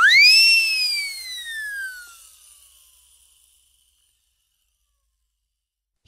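A whistle-like swoosh sound effect for a logo intro. It shoots up in pitch, then glides slowly down and fades away over about three seconds, followed by silence.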